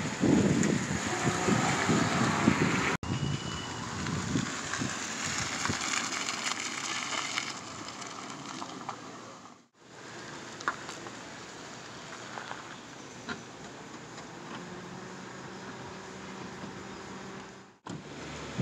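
Outdoor noise through a phone microphone: uneven wind rumble on the mic for about three seconds, then a steady hiss as a car rolls slowly along a dirt street. After a sudden change near ten seconds it drops to quieter steady background noise with a few faint clicks.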